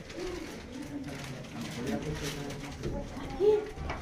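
Low, indistinct voices murmuring, with one short, louder voice sound about three and a half seconds in.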